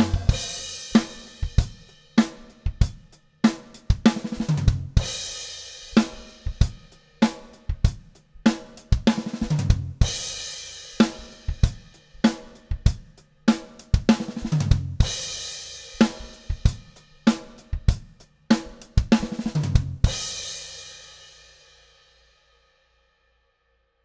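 Acoustic drum kit playing a groove in repeated two-bar phrases. Each phrase ends with a short lick and a crash cymbal struck with the bass drum on the "and" of four, a push that lands about every five seconds. The last crash rings out and fades away near the end.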